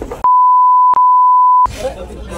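Censor bleep: a loud, steady, high pure beep dubbed over the speech, in two back-to-back bleeps with a brief break between them, lasting about a second and a half in all. Heated speech is heard just before and just after it.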